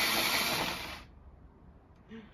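Plug-in electric pencil sharpener running as it sharpens a dull colored pencil, stopping about a second in.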